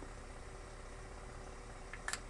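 Steady faint hum inside an ambulance's patient compartment. Right at the end comes a brief soft hiss as a nitroglycerin pump spray is pressed.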